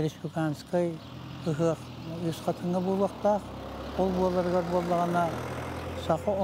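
A man speaking, with a low vehicle engine rumble rising in the background through the second half.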